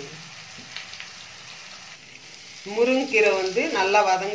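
Chopped onions and freshly added moringa leaves sizzling quietly in hot oil in a metal kadai, with a couple of faint spoon clicks. A voice starts talking over it after about two and a half seconds.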